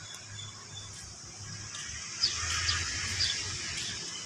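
A few short, high bird chirps in the second half, over a steady high-pitched insect drone.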